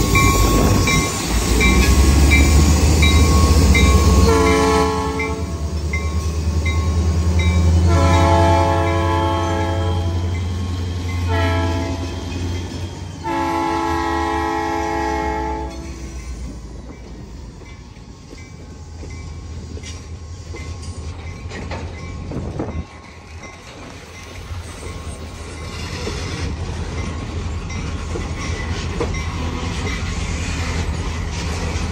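Huron & Eastern diesel locomotives pulling out under load, engines rumbling, with the locomotive bell ringing steadily. The horn sounds four blasts, long, long, short, long, the pattern of the grade-crossing signal. Once the engines have passed, loaded lumber flatcars roll by with wheels clacking and a single clunk.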